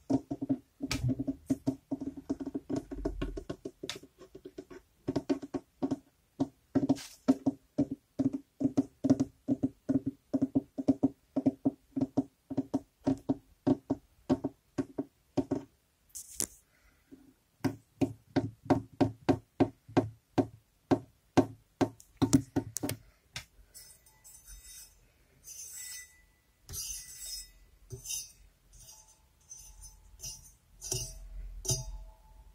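Fingers tapping rapidly on hollow household objects, several taps a second, each with a ringing pitch. About 17 seconds in the tapping moves to an object with a deeper sound, and for the last several seconds it turns to scratchy rubbing and scraping.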